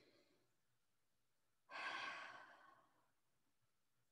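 A woman's single long sigh, breathed out about two seconds in and trailing away over about a second, in an otherwise near-silent room.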